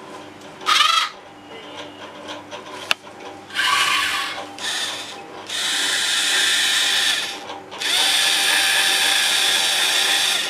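Small geared DC motors of a remote-controlled robot arm and gripper whirring in bursts as they are switched on and off: a short burst about a second in, two short ones around four and five seconds, then two long runs of about two seconds each. There is a single sharp click near three seconds.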